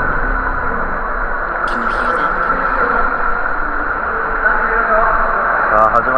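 Steady echoing noise of an indoor swimming-pool hall, with a brief crackle about two seconds in and indistinct voices toward the end.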